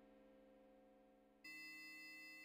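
Quiet live-coded electronic music: a held chord of steady tones fading slowly, then a new held chord with bright high tones coming in suddenly about one and a half seconds in.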